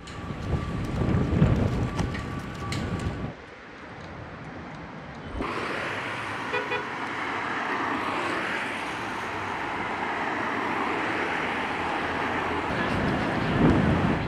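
Gusty wind buffeting the microphone while a cloth flag flaps, for about three seconds. After a quieter pause, steady city street traffic noise from passing cars.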